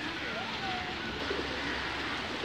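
Steady rush of water from a shallow stream, with faint bird calls scattered over it.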